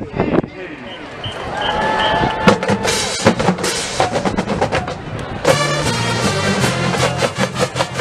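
Marching band playing: drums and percussion at first, then the full brass section comes in about five and a half seconds in with sustained chords over a stepping bass line.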